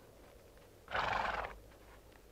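A horse gives one short neigh, lasting about half a second, starting about a second in, over a quiet background.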